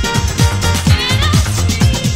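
Early-1990s house record playing, an instrumental passage: a steady kick-drum beat over a sustained bass line, with a wavering high synth line about a second in.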